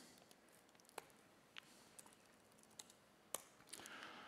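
Near silence with about five faint, sharp clicks spaced irregularly, from keys being tapped on a laptop.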